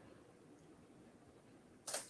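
Near silence: faint room tone in a pause between a man's phrases, with his voice starting again just before the end.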